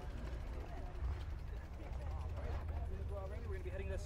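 Motorcycles rumbling low and steady under the chatter of people nearby, the voices clearer in the second half.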